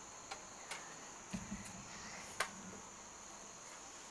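Insects chirring in a steady, high, even tone, faint, with a few soft clicks and a low soft thump about a second and a half in.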